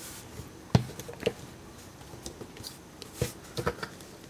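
Hard plastic action-figure parts clicking and tapping as a Transformers figure is handled, has an accessory fitted and is stood on a table: one sharp click about three-quarters of a second in, a lighter one soon after, and a few quick clicks near the end.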